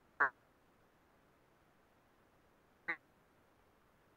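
Two brief, clipped voice fragments about three seconds apart over near silence, chopped-off bits of speech through a video-call connection.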